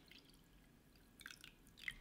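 Near silence: kitchen room tone, with two faint ticks in the second half.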